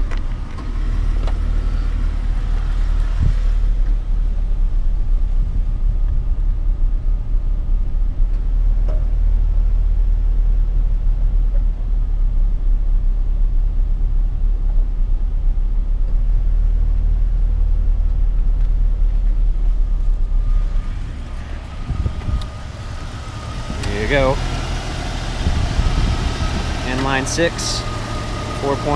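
Low, steady rumble of the 2000 Jeep Cherokee's 4.0-litre PowerTech inline-six idling, heard from inside the cab. The rumble drops away about three-quarters of the way through, and a man's voice comes in near the end.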